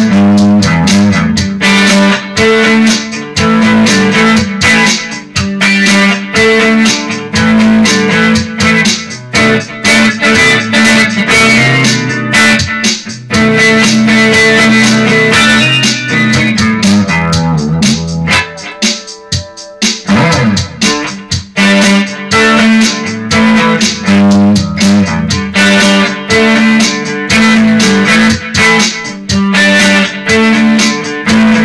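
Electric guitar, a Gibson Les Paul Tribute played through an amplifier, playing a rhythmic instrumental passage of picked chords and riffs. The playing thins out briefly about eighteen to twenty-one seconds in, then picks up the steady rhythm again.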